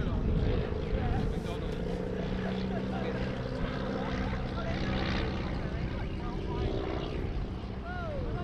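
The Auster AOP.6's de Havilland Gipsy Major four-cylinder engine and propeller give a steady drone as the aircraft flies overhead. Wind rumbles on the microphone.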